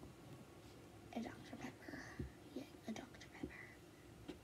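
A girl's quiet whispered speech, a few short faint phrases too soft to make out.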